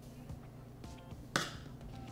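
Faint background music, with a single sharp knock about a second and a half in: a serving spoon knocking against a ceramic baking dish as ragu is spooned onto lasagna noodles.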